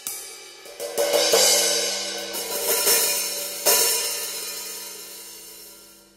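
Red Paiste Color Sound 900 cymbals struck with drumsticks: a handful of strokes, a stronger one just past the middle, and the ringing wash fading away over the last couple of seconds. The player hears these colour-coated cymbals as a little dry, which he puts down to the colour layer cutting off the sustain.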